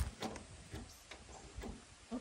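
A few faint, scattered clicks of a key being worked in the door lock of an IROC Camaro.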